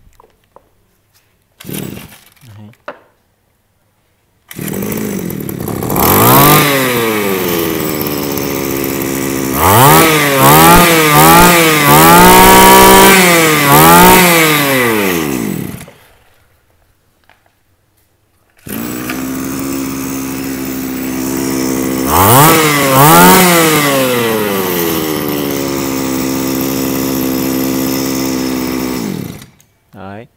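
A 22 cc Iseki 221 brushcutter engine catches about four seconds in and runs, then revs sharply in a quick series of throttle blips before shutting off. After a short pause it starts again, revs twice and runs steadily before cutting off near the end.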